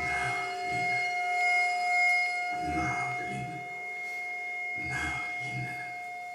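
Improvised phonetic sound poetry: short non-verbal vocal sounds into a microphone, coming every one to two seconds, over two steady held tones, a high one and a lower one beneath it.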